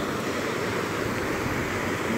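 Steady rush of water spilling over a small rock cascade into a pond.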